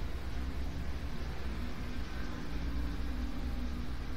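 Steady low hum with a faint even hiss underneath.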